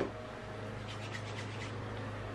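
Fingertips rubbing primer into facial skin, a few soft brushing strokes about a second in. Underneath is the steady low drone of a neighbour's lawnmower running.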